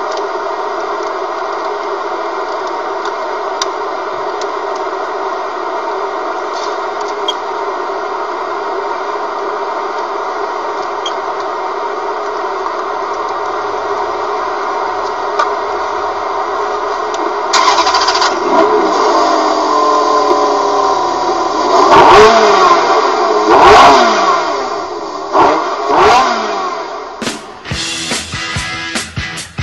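Sports car engine running steadily, then revved hard from about two-thirds of the way in. The revs sweep up and down in several sharp throttle blips, the loudest two close together. Rhythmic music starts right at the end.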